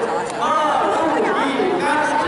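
Speech: a man talking into a handheld microphone over a loudspeaker, with chatter from a seated crowd.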